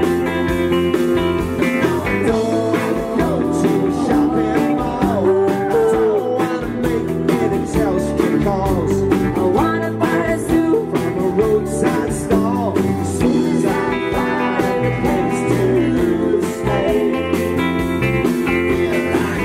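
Live band playing a folk-rock song: strummed acoustic and electric guitars over a steady drum beat, with voices singing.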